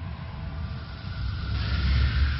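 Intro sound effect: a deep rumble with a rushing hiss that swells about a second and a half in.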